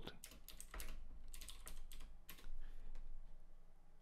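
Typing on a computer keyboard: a quick run of separate keystroke clicks that thins out near the end.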